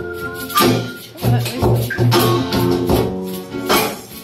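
Live band playing an instrumental passage: an acoustic guitar over a steady low bass pulse and percussion hits about twice a second.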